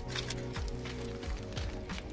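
Background music with sustained, steady tones.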